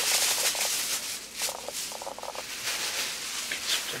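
Thin plastic grocery bags rustling and crinkling as they are handled, a crackly rustle throughout.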